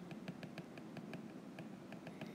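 Faint, irregular light clicks and taps of a stylus tip on a tablet's glass screen while handwriting, over low room hiss.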